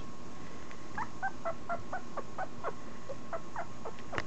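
A 2.5-week-old Italian Greyhound puppy squeaking: a quick run of about a dozen short, high squeaks, each dropping in pitch, about four a second, starting about a second in.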